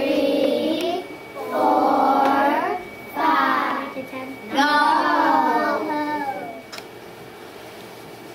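Young children's voices chanting together in a sing-song way, in four phrases that stop about seven seconds in. After that only a low room hum remains.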